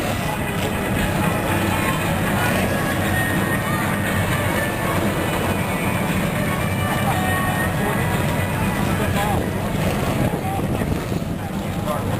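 A field of NASCAR Busch Series stock cars running together on the track, their V8 engines making a steady rumble, with talk from the crowd over it.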